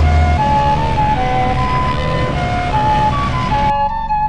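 Dirt bike engines and wind noise under music with a simple high, flute-like melody. The engine noise cuts off abruptly near the end, leaving only the music.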